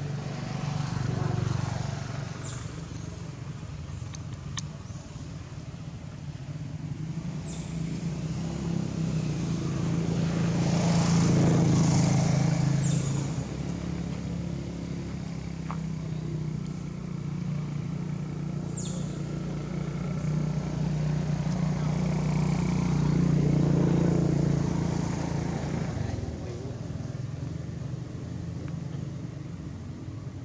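Low, steady engine hum of motor vehicles that swells and fades about three times, as if vehicles were passing. A few short, high falling chirps come now and then.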